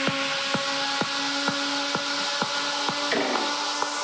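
A techno track playing over a club sound system: a kick drum at about two beats a second under a held synth chord, with the deep bass filtered out so the kick sounds thin and clicky. About three seconds in, a rippling synth pattern comes in.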